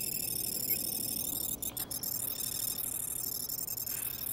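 A computer's rapid, high-pitched electronic trill as it scrolls through a list of phone numbers, steady in level.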